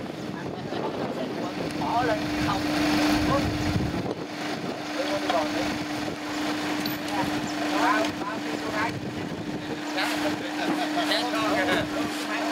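Voices talking at a distance over wind buffeting the microphone, with a steady hum that sets in about a second in and holds on.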